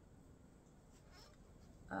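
Near silence: quiet room tone with a faint rustle about a second in, then a woman's drawn-out 'um' starting at the very end.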